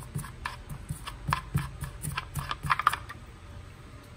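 A tight threaded cap over the speed dial on a pump's inverter housing being unscrewed by a gloved hand: a run of small clicks and scrapes that stops about three seconds in.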